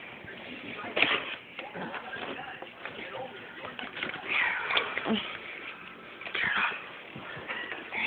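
Hushed whispering between people, with shuffling and a few soft knocks from things being handled.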